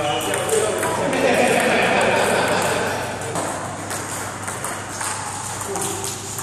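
Table tennis balls ticking off paddles and tables in quick, irregular clicks from more than one table in play, over a babble of voices that is loudest in the middle.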